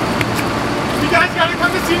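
Steady outdoor background noise, a low rumble with hiss like distant traffic, with a voice starting to call out about a second in.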